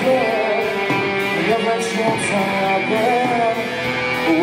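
Live rock band playing: electric guitar, bass guitar and drums with cymbals, under a male lead vocal.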